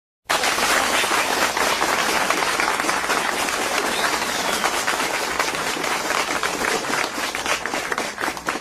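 Audience applauding: dense, steady clapping that starts abruptly after a moment of silence.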